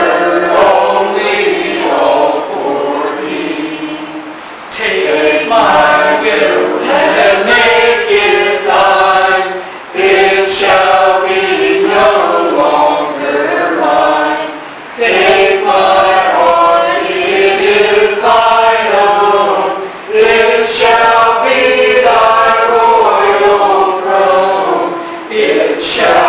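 A group of voices singing a hymn together in church, in phrases of about five seconds with short breaks between them.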